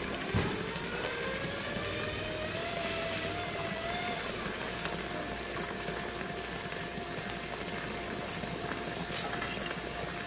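Zip line trolley pulleys running along the steel cable, a whine that rises in pitch over the first four seconds as the rider picks up speed, then holds steady.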